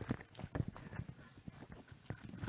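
Footsteps of shoes on a stage floor: a series of soft, irregular thuds as a person walks a few steps.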